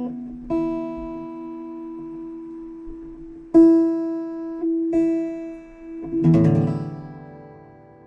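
Acoustic guitar: single notes plucked one at a time and left to ring, several at the same pitch, then a chord strummed about six seconds in that fades away.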